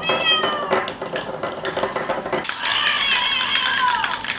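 Two high, cat-like meows: a short one falling in pitch right at the start, and a longer one from about halfway that drops at the end, over light clicking and rattling.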